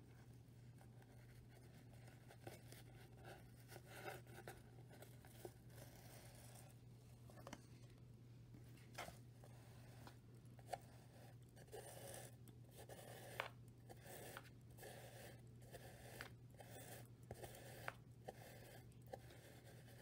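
Faint rustling and scratchy scrapes of yarn being drawn with a needle through the warp strings of a cardboard loom, in irregular short strokes with a few sharper ones. A steady low hum runs underneath.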